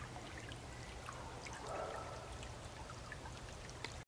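Faint, steady trickle of a small woodland stream, with scattered light ticks.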